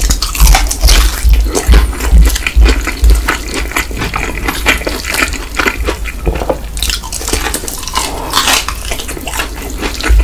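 Close-miked biting and chewing of crispy fried chicken: a dense run of crackling crunches from the battered crust, with heavy low thumps in the first few seconds and another burst of crunching near the end.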